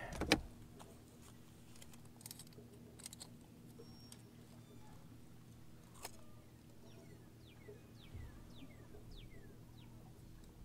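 Faint clicks and metallic rattles of a lip-grip fish scale being taken out and clamped onto a largemouth bass's jaw, over a steady low hum. Near the end comes a run of short falling chirps.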